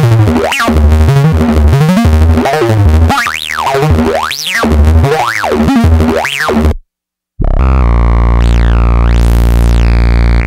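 Novation Bass Station II analog synthesizer playing a bass line, each note with a filter sweep that rises and falls. About seven seconds in the sound cuts out for half a second. A different sound then comes in: a held low note whose filter sweeps up and back down.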